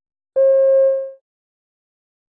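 A single electronic beep, a steady mid-pitched tone just under a second long that starts sharply and fades away. It is the cue tone of an exam listening recording, marking that the next recorded extract is about to play.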